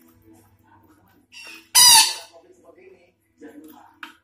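Betet Sumatra parakeet giving a single loud, harsh squawk about two seconds in, just after a softer short note, followed by a few faint quieter sounds.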